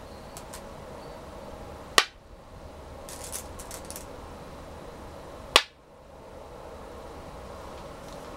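Two go stones snapped down onto a wooden go board, each a single sharp click, about three and a half seconds apart. Between them there is a light clatter of stones in the stone bowl.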